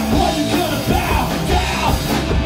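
Hardcore punk band playing: a vocalist yelling over electric guitar, bass and drums.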